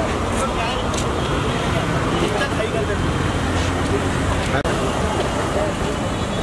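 Busy street noise: a steady traffic rumble with a crowd's scattered shouts and chatter, and a car engine running as an SUV pulls away past the microphone. The sound cuts out for an instant a little past the middle.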